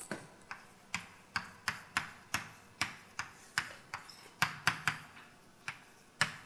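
Chalk writing on a blackboard: a run of sharp, irregular taps and clicks, about two to three a second, as each stroke strikes the board.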